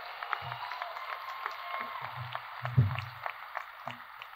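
Audience applauding steadily with dense clapping, with faint voices in the crowd and a louder low bump about three seconds in.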